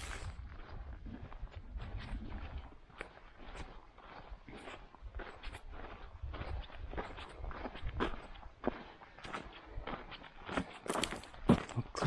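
Footsteps of a hiker walking along a sandy bush track strewn with leaf litter, an irregular run of soft crunching steps.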